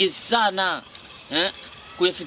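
Short bursts of speech in Swahili over a steady, high-pitched chirr of crickets.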